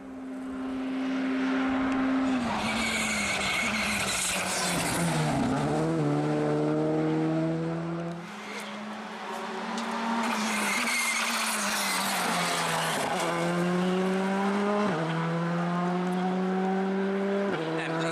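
Škoda Fabia rally car's engine at stage pace as it passes close by. Its revs fall as it brakes into the corner in the first few seconds, then climb as it accelerates away, with sharp upshifts about every two seconds near the end.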